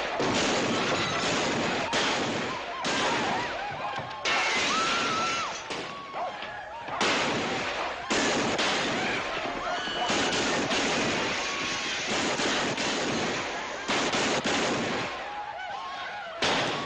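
Repeated gunshots fired at irregular intervals amid men yelling and whooping, over a dense, noisy din of riders in the street.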